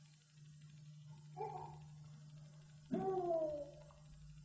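Two short, high-pitched cries, the second longer with its pitch bending slightly down, over a steady low hum from the recording.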